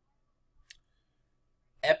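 A single short click about a third of the way in, against near silence; a man's voice starts speaking just before the end.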